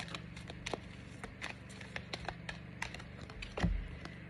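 Oracle cards being handled and shuffled by hand: a run of light, irregular clicks and snaps, with a low bump near the end.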